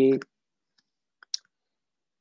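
Two short, sharp clicks a little over a second in, the second louder than the first, with silence around them.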